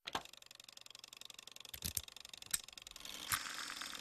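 Gramophone record turning under the needle before the music starts: faint surface hiss with fine crackle and a few sharp pops, a little louder in the last second.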